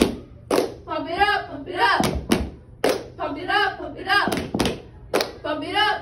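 Girls chanting a cheer in unison, with sharp claps and thuds marking the rhythm between the chanted phrases, some of them in quick pairs.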